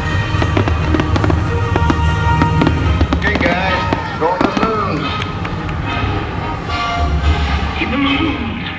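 Fireworks bursting in the sky, many sharp pops and crackles in quick succession, over loud show music.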